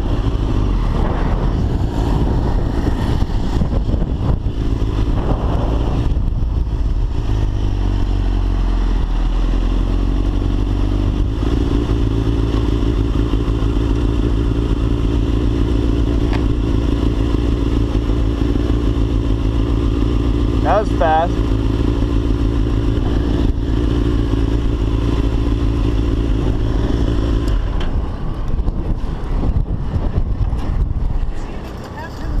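Suzuki GSX-R1000 inline-four running at low revs as the bike rolls slowly. The engine note falls and settles into a steady low-speed run, then cuts off a couple of seconds before the end.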